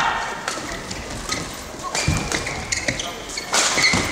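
Badminton doubles rally in a large hall: a series of sharp racket hits on the shuttlecock, with shoes squeaking briefly on the court floor about halfway through and near the end.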